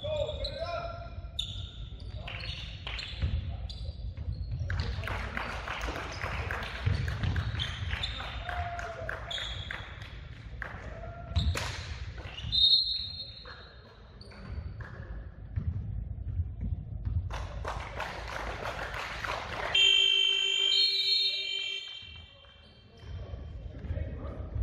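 A basketball game on a hardwood gym floor: ball dribbling and bouncing, sneaker squeaks and players' voices echoing in the hall. About twenty seconds in, the scoreboard horn sounds once, a steady tone for about two seconds, as the game clock runs out to end the game.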